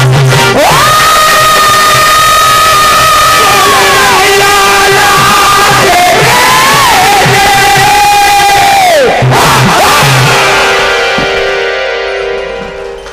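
Live veer ras (heroic-mood) bhajan: a male singer holds long, high notes that bend and then fall away about nine seconds in, over dholak drumming. The music thins and fades near the end.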